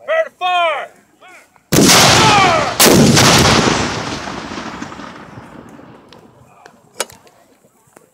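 Two black-powder cannon shots about a second apart, each sudden and loud, followed by a long rolling rumble that fades over a few seconds.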